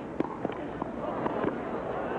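Large stadium crowd applauding, dense clapping with voices and cheers mixed in.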